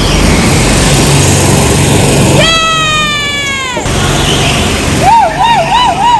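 Go-kart engines running, with kart tyres squealing as they slide on the smooth concrete floor: one long squeal that falls slowly in pitch in the middle, then a wavering squeal near the end.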